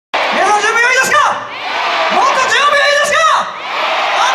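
Concert audience screaming and cheering, many high-pitched shrieks overlapping and swelling in two waves.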